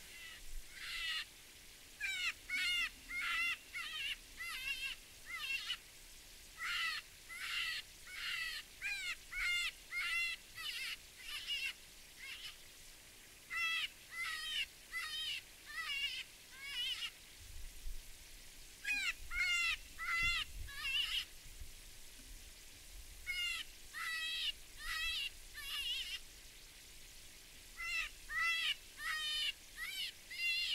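Lucky Duck Roughneck electronic predator caller playing a squalling distress call: identical high calls, each bending up and down in pitch, repeated about two a second in runs of several calls with short pauses between runs.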